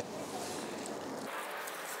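Quiet, steady outdoor background noise with no distinct events.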